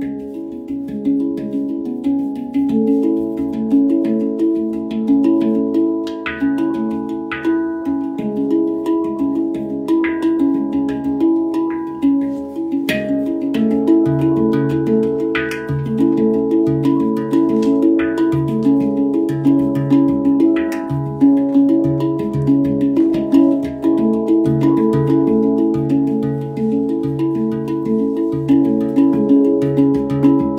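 Steel handpan played with the fingertips: a continuous flow of ringing, overlapping tuned notes struck in quick succession, with a few brighter, sharper accented strikes.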